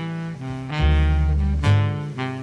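Slow instrumental jazz: sustained melody notes over deep bass notes, with a strong new phrase entering a little under halfway through.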